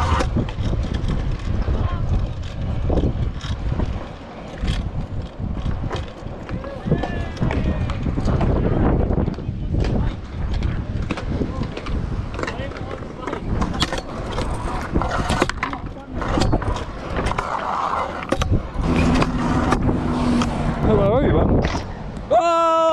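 Stunt scooter rolling over a concrete skatepark. The wheels make a continuous rough rumble, with repeated sharp knocks and clacks as it rides over transitions and lands.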